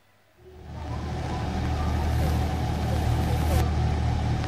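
Outdoor ambience opening after a brief silence: a steady low engine rumble with a wash of noise, fading in about half a second in and then holding steady.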